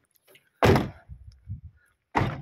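A single sudden loud thump about half a second in, dying away within half a second, followed by a few faint low knocks.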